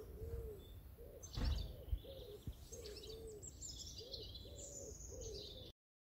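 Woodland birdsong: a pigeon cooing over and over in low, soft notes, with songbirds chirping higher up. A short bump about a second and a half in, and the sound drops out just before the end.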